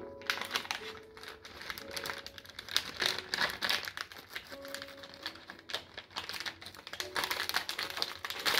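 Wrapping paper crinkling and tearing in dense, irregular crackles as a dog bites and pulls at a wrapped present.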